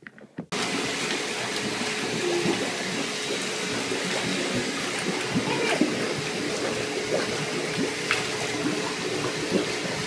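Water rushing and churning steadily in a bubble-filled bathtub, with a faint low hum beneath it. It starts about half a second in.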